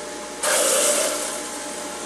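Water poured down the feed chute of a running Jack LaLanne electric juicer: a sudden splashing rush about half a second in that fades over the next second or so, over the juicer motor's steady hum.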